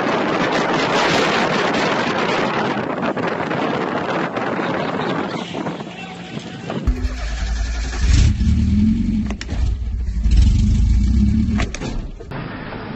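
Loud wind and road noise heard from a moving vehicle driving on a dirt road. About seven seconds in it changes abruptly to a heavy low rumble with a wavering pitch and a few sharp knocks.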